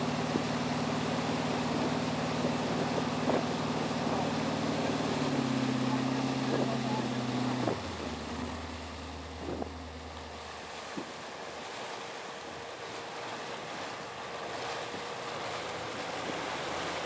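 Motorboat engine running at speed over the rush and splash of its wake, then throttled back about eight seconds in: the engine note drops sharply and the sound falls to a lower, quieter hum as the boat slows.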